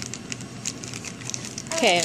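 Faint scattered rustling and small clicks in a quiet room, then a woman says "okay" near the end.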